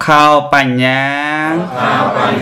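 A Buddhist monk's single male voice chanting Pali: a short syllable, then one long drawn-out vowel that dips and rises in pitch.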